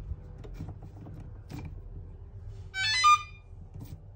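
Light clicks and rustles of armoured cable and a brass gland being handled, then a short, bright electronic chime of several high tones, about half a second long, near the end. The chime is the loudest sound.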